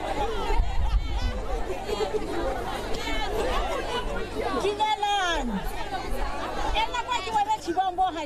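Crowd chatter: several voices talking over one another, over a steady low hum.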